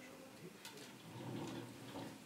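Faint handling noise of a bonsai pot being tilted on its turntable, with a single sharp click about two-thirds of a second in; a low murmur of voices in the second half.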